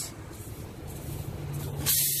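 Air hissing out of a punctured trailer tire, starting suddenly and loud near the end, as a tire repair tool is worked in the hole in the tread. Before it, only a faint low steady hum.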